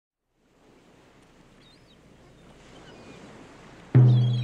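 Faint sea-surf noise fading in and slowly building, with a couple of faint high bird chirps. Just before the end, a loud low sustained musical note starts as the song begins.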